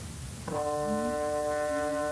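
Faint hiss, then about half a second in a chamber ensemble enters with a held chord of several steady notes that sustains to the end.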